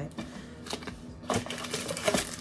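Camera accessories in plastic bags being handled in a cardboard box: plastic crinkling with a few light clicks and taps, about one every half second, the crinkling thickening toward the end.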